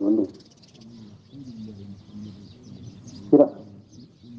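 Faint bird calls in the background during a lull in the talk, with a spoken word ending just at the start and a short, loud vocal exclamation about three seconds in.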